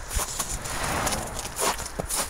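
Irregular rustling and scuffing with a few sharp knocks: clothing brushing close to the microphone and footsteps on snowy, icy ground.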